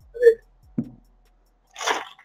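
A deck of playing cards dribbled from one hand down onto a table mat: a short fluttering rush of cards falling near the end, heard over a video call. A couple of faint short sounds come before it.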